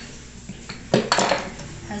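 A washing machine runs with a low, steady hum. About a second in there is a single sharp clattering knock that rings briefly.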